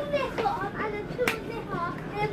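Voices talking in the background, with one sharp click a little past the middle.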